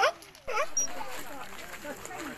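Two short sea lion barks about half a second apart, over a background of people's voices.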